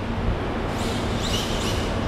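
Electric RC drift car (Yokomo YD2 SXIII) driving on the garage floor: the motor's high-pitched whine, described as "screaming", rises and falls with the throttle a little under a second in, over steady background noise.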